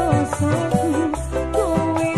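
Live Javanese dangdut band music: an ornamented melody line that slides between notes, over a steady bass and regular drum hits.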